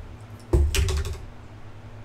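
A short burst of rapid clicks and rustling about half a second in, lasting about half a second, over a steady low hum.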